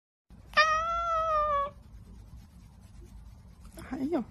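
Domestic cat meowing: one long, steady meow lasting about a second, then a shorter call starting near the end.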